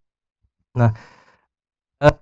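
A man's voice says a single short "nah" about three-quarters of a second in, trailing off into a breathy exhale. Before and after it there is dead silence.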